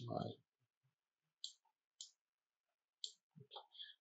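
Faint computer mouse clicks: single clicks about a second apart, then a quick run of small clicks near the end.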